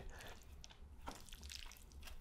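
Faint, scattered soft clicks and wet squishes of wooden chopsticks lifting saucy noodles from a glass baking dish.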